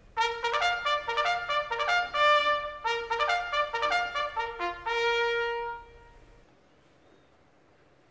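A short trumpet fanfare: a quick string of bright notes ending on one longer held note, finishing about six seconds in.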